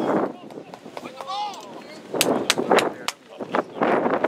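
Wind rushing on the microphone with a faint distant voice, then a run of four sharp cracks about a third of a second apart just past halfway.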